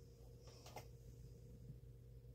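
Near silence: room tone with a steady low hum and one faint click about three-quarters of a second in.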